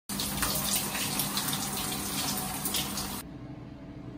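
Shower running, its water falling on a person washing their hair. It cuts off abruptly about three seconds in, leaving a faint low steady hum.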